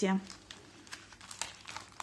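Clear plastic packaging bag crinkling and crackling in irregular little bursts as it is handled and moved about by hand.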